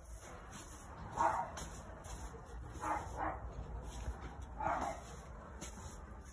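A dog barking four times in short single barks: one about a second in, two in quick succession near three seconds, and one near five seconds.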